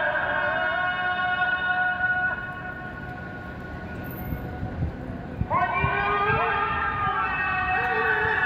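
Muezzin's call to prayer (adhan) sung over mosque loudspeakers: a long held phrase trails off about two seconds in. After a pause of about three seconds a new phrase begins on a rising note.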